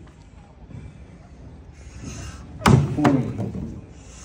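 One axe blow biting into a wooden log during underhand hard-hit chopping: a single sharp chop about two-thirds of the way in, counted as one stroke toward the total needed to sever the block.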